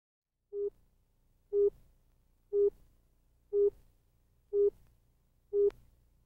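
Six short electronic beeps, all at the same steady mid pitch, evenly spaced about one a second.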